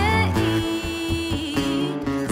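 A woman singing a pop ballad live with acoustic guitar accompaniment, her voice holding one long note through most of it.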